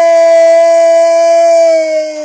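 A man singing one long, loud, wordless held note, steady in pitch, that dips slightly and begins to fade near the end.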